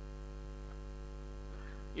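Steady electrical mains hum in a microphone and PA sound system, a low, even buzz of stacked tones with no other sound over it.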